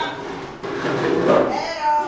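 Indistinct voices of people talking in the background, with a high, drawn-out call that rises and then holds near the end.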